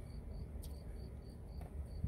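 A cricket chirping steadily and faintly, short high chirps about three times a second, over a low steady rumble.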